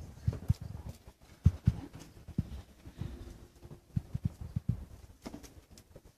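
Irregular soft knocks and thumps, with a brief faint held note about three seconds in.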